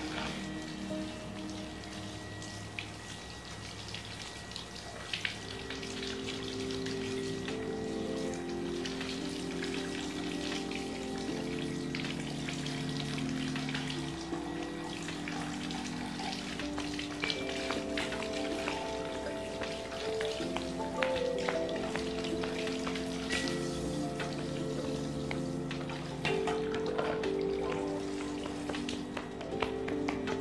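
Background music with slow, held chords, over the hiss and patter of water from a handheld shower head spraying onto wet hair during a rinse.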